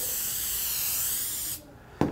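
Aerosol can of stainless steel cleaner spraying in one steady hiss, cutting off shortly before the end.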